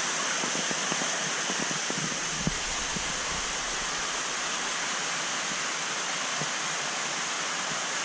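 Steady rush of water moving in a large fish tank, with a few faint knocks and a soft thud in the first three seconds.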